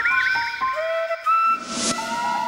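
Short musical scene-change sting: held whistle-like tones with a fluttering trill at the start and a brief rushing hiss near the end.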